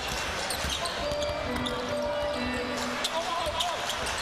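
Live basketball game: steady arena crowd noise with a ball being dribbled on the hardwood court and short knocks of play. A few held tones sound through the middle.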